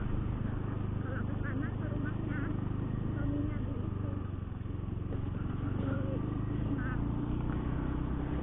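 Honda Beat FI scooter's 110 cc single-cylinder engine running at a steady cruise while riding, with a continuous drone and road noise.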